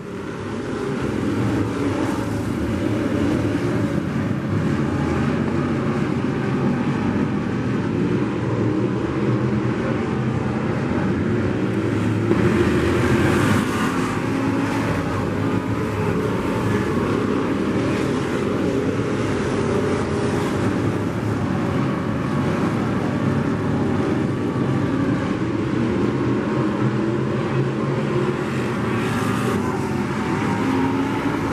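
Several dirt-track sport modified race cars' V8 engines running around the track together in a steady, dense drone. The sound comes up over the first couple of seconds and is loudest around twelve to thirteen seconds in, as a car passes close.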